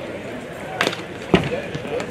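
Two sharp impacts from a pitched baseball about half a second apart, the second the louder and deeper, as the batter swings and the catcher takes the pitch.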